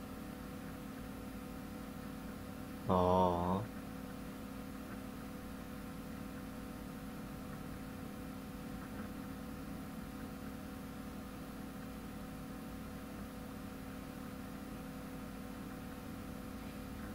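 Steady electrical hum from the recording setup. About three seconds in comes one short, wavering vocal hum in a man's voice, under a second long.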